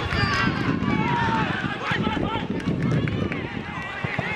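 Players' shouts and calls during a seven-a-side football match, several voices rising and falling in pitch, over a dense low rumble.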